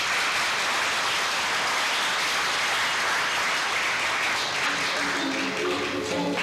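Audience applauding steadily in a hall, with music starting up underneath near the end.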